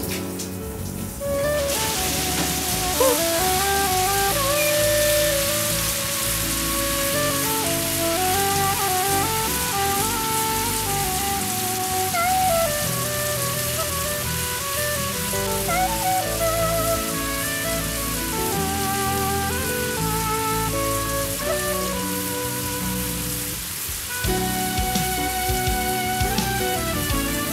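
Overhead rain shower turned on, spraying water down steadily from about two seconds in, with a music score playing throughout.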